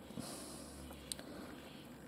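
Quiet handling noise: a faint soft hiss and one light tick about a second in, as fingers hold and turn a piece of rough boulder opal.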